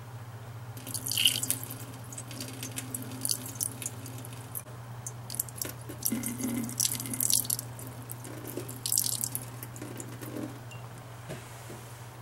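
Water poured from a small glass jar in a thin stream onto a stainless steel sink, splashing and dripping near the drain in several short spells. A steady low hum runs underneath.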